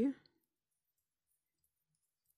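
A woman's voice ending a counted word, then near silence: room tone.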